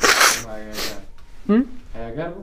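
A man sneezing once into his hands: a loud sharp burst followed by a short voiced tail, with a brief rising vocal sound about one and a half seconds in.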